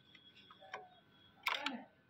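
Plastic ink damper on an Epson L805 print head being worked loose, with faint clicks and then a sharp double click about one and a half seconds in as it comes off.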